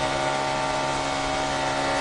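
NASCAR stock car V8 engine at racing speed, heard from the in-car camera: a steady drone that holds one pitch.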